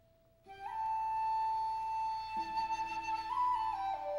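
Chamber ensemble music: after a brief hush, a flute enters about half a second in with a long held high note that steps up near the end, over a lower sustained note that drops a step about halfway through.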